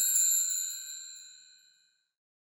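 A bright chime sound effect ringing and fading away over about a second and a half, a transition sting as the scene closes to black.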